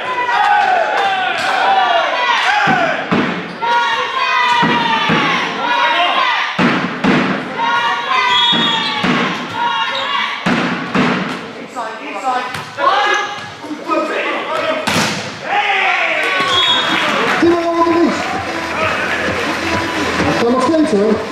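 Volleyball game sounds in an echoing sports hall: sharp thuds of the ball being hit and striking the floor, over constant shouting and cheering from players and spectators.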